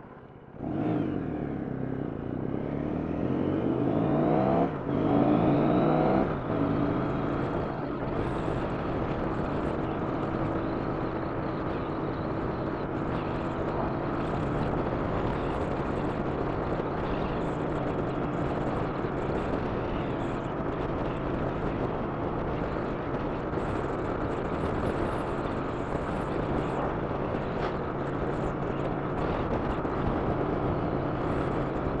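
Triumph America's 865cc parallel-twin engine pulling away hard from a stop, its pitch rising through first gear, with a gear change about four and a half seconds in and another around six seconds. It then settles into a steady cruise with wind noise on the helmet microphone.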